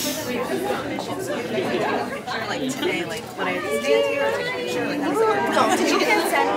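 Background chatter: people talking in a large room, no voice clear enough to make out words.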